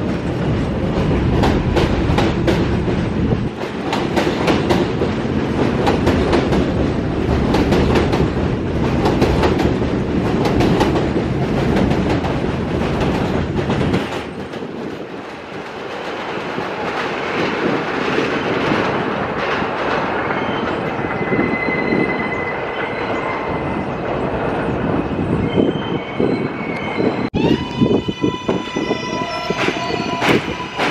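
Rattling and clacking of R160 subway cars running past close by along an elevated platform, their wheels beating over rail joints. After a break, a train is heard coming in on elevated track with a high steady tone for a few seconds, and near the end a steady whine starts abruptly as a train rolls into the station.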